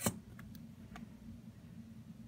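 A sharp plastic click at the start, then two faint ticks over a faint low hum, as a plastic bottle of styling gel is handled and turned upside down over the glass bottle.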